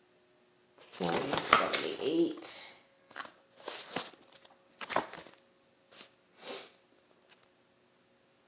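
Quiet speech under the breath: a short murmur, then a few breathy whispered bursts, each cut off quickly.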